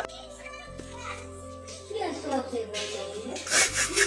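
Children talking in the background over music, quieter than the talk before and after.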